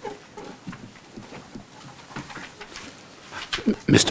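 Lull in a council chamber: faint distant voices and small rustles and knocks from people settling at the dais. A man begins speaking over the microphone just before the end.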